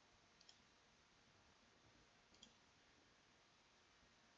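Near silence with two faint computer mouse clicks, one about half a second in and one about two and a half seconds in.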